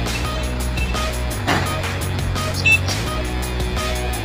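Background music with a steady beat, with a short high-pitched tone about two and three-quarter seconds in.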